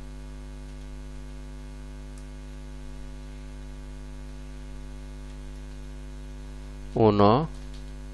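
Steady electrical mains hum, unchanging throughout.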